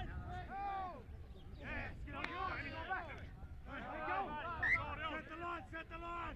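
Several voices calling out and talking over one another at a rugby league game, with no single voice clear.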